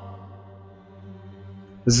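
Quiet intro music: a low, steady sustained drone that fades slightly. A man's voice begins narrating near the end.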